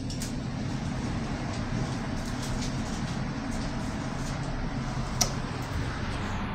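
Steady low rumble of street traffic with a low hum under it, and one sharp click about five seconds in.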